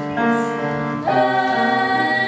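Kawai grand piano playing held chords, with a young woman's solo singing voice coming in over it about a second in.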